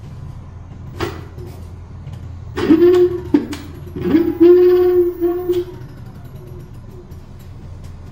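Electric scooter rear hub motor spinning up twice under throttle while held back by hand: each time a loud whine sweeps quickly up in pitch and then holds steady, over a low hum, with a click about a second in. The noise and loss of power under load are what the mechanic calls a motor out-of-phase fault.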